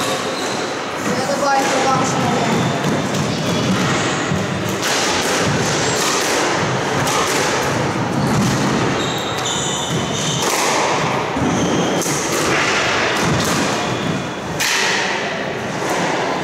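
A squash rally: the ball is struck by rackets and thuds off the walls and glass in a run of sharp hits, with footwork on the wooden floor. Voices chatter throughout in a large, echoing hall.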